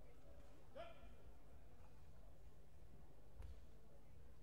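Faint sports-hall room tone with a low hum. About a second in there is one short, rising voice call from somewhere in the hall, and near the end a single soft thump.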